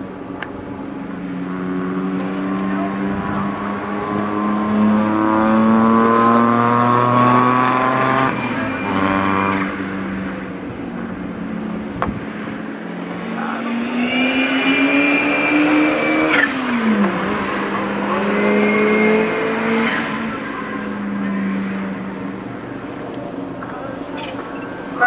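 Small racing cars' engines accelerating on the circuit, the pitch climbing through the revs in a long rising run over the first several seconds. Past the middle comes a higher whine, then a sudden fall in revs, and the engine note climbs again.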